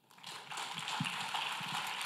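Congregation applauding, starting a moment in and carrying on evenly.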